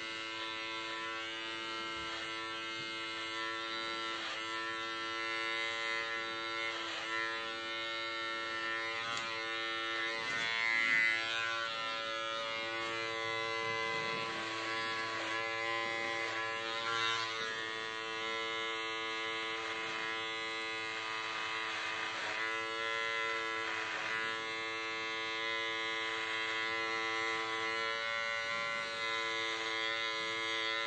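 Electric hair trimmer running steadily with a buzzing hum as it is drawn through hair, its tone wavering slightly as the blades meet the hair, with one brief louder moment about a third of the way in.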